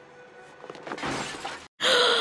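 Film soundtrack of glass shattering, a car window smashed by a punch, fairly quiet and building up over a second or so. Near the end a loud, drawn-out gasp begins.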